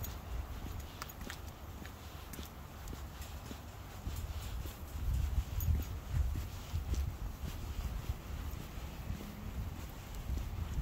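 Footsteps on a concrete sidewalk during a dog walk, in an uneven rhythm, over a low rumble, with scattered light clicks.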